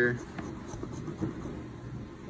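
A coin scraping and tapping on a scratch-off lottery ticket: a few short, faint scrapes, with a brief bit of voice right at the start.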